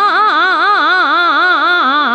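A Hindustani classical vocalist singing a fast taan in Raag Bhairav, each note shaken so the pitch ripples about four times a second. The line climbs early on, then falls back toward the tonic near the end, over a faint steady drone.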